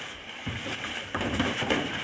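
Boxing gloves landing punches in sparring: a few short, sharp knocks, the first about half a second in and several more close together after one second.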